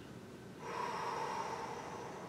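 A man drawing a long, deep breath in, demonstrating slow belly breathing from the dantian. It starts about half a second in and lasts over a second.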